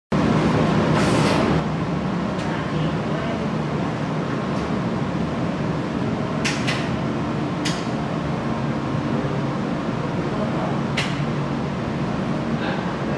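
Steady indoor room noise with a low hum, louder for the first second and a half, with a few sharp clicks scattered through.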